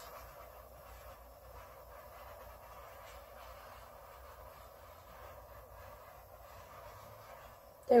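Steady hiss of a handheld torch flame played over wet acrylic pour paint.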